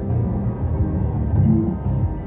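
Lobstermania 3 slot machine playing its game music during a spin: a tune of short, held notes over low tones.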